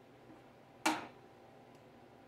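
A single short, sharp click about a second in: a small worn plasma-torch part set down on the metal top of the plasma cutter's case.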